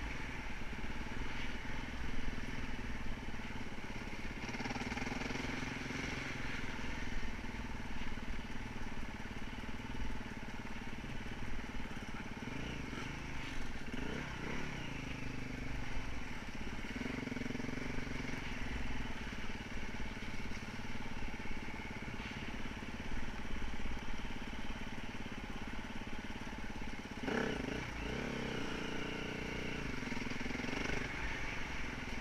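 Enduro motorcycle engine running while the bike rides over a rough, muddy dirt track. The engine note stays fairly steady, with the revs rising and falling around the middle and again near the end.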